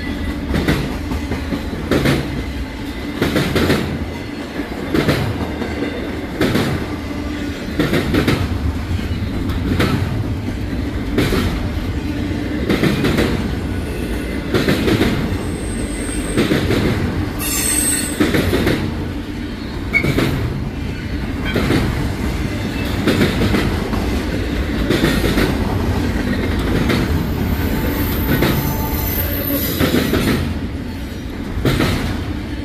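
Norfolk Southern intermodal freight train passing close by: a steady rumble of cars with repeated clacks from the wheels. Brief high-pitched wheel squeals come in about halfway through and again near the end.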